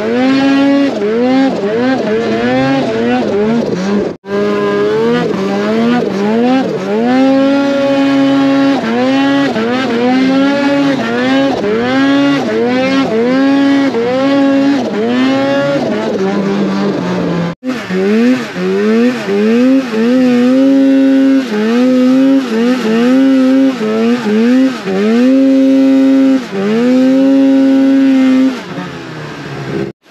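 Snowmobile engine being ridden hard, revving up and down over and over as the throttle is worked, with short steady stretches at high revs. The sound cuts out briefly twice, and near the end the revs drop and the engine goes quieter.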